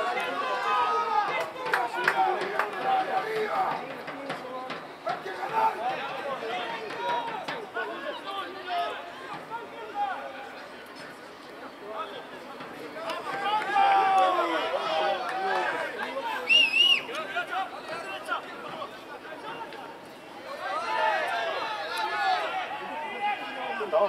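Several voices talking over one another, words indistinct, with a short warbling referee's whistle blast a little past the middle.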